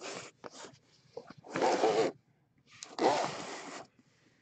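Card-box packaging being handled and torn open: several short rustling, ripping bursts, the longest near the end.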